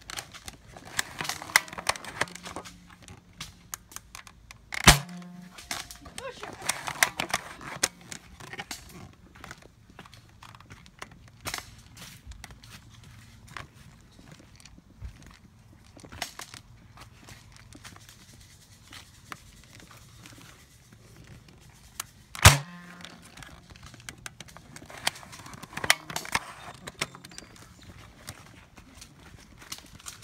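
Handling clicks and rustling as an airsoft rifle with a mounted camera is carried through leafy brush, with two sharp, loud knocks, one about five seconds in and one about twenty-two seconds in.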